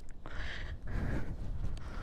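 A person breathing heavily, two soft breaths about a second apart, over a low steady rumble.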